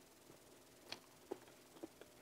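A man chewing a mouthful of hot dog: three faint, short mouth clicks about a second in and near the end, otherwise near silence.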